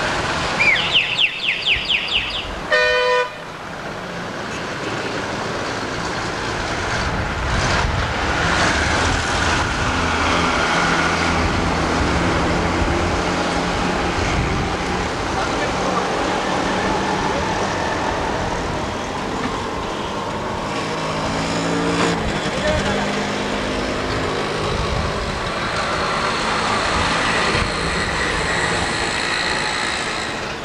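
Traffic and crowd noise with a murmur of voices. Near the start there is a warbling high-pitched note, then a short vehicle horn toot about three seconds in.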